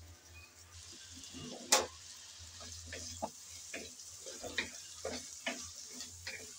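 Potato cubes and whole prawns sizzling in hot oil in a pan, with a wooden spatula knocking and scraping against the pan as they are stirred; one sharper knock a little under two seconds in.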